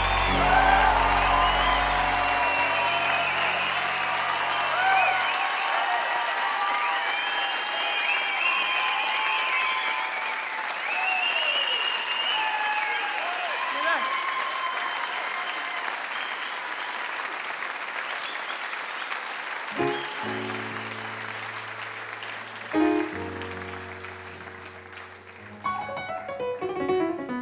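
Live audience applauding and cheering with whoops as the band's final held chord dies away in the first few seconds. The applause slowly fades, and about twenty seconds in, soft held low notes from the band's keyboards begin under it.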